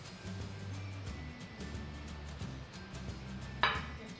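Background music with a steady bass line, and near the end one sharp clink of crockery against the stone counter with a brief ring, as the plate is handled.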